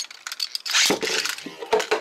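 Beyblade tops launched into a plastic BeyStadium: a short rip from the launchers, then sharp clicks as the tops drop into the dish near the end.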